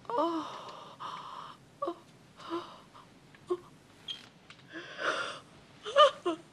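A woman's voice cries out in a long wavering wail, then breaks into sobbing in short gasping bursts, roughly one a second. It is weeping at the revival of the girl she holds.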